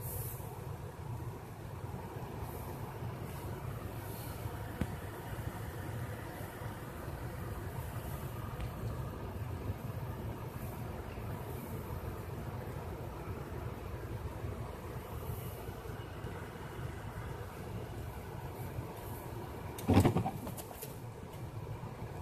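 Steady low drone of a car's engine and tyres on snow, heard from inside the cabin as the car creeps along a snowy road. About two seconds before the end comes one brief loud thump.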